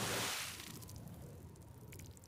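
Sound effect from the anime's soundtrack: a sudden whoosh of rushing noise that starts abruptly and fades over about a second and a half.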